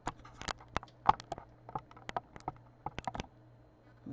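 Handling noise from moving the quilt square: a dozen or so light, irregular clicks and taps over a faint steady low hum.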